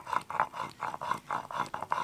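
Stone-on-stone grinding on a sheel-nora: a cylindrical stone pestle rubbed back and forth over a flat grooved grinding stone, mashing wet spice paste in quick rhythmic gritty strokes, about five a second.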